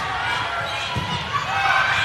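Echoing gym ambience: several voices calling and chattering in a large hall, with a couple of dull ball thumps about a second in.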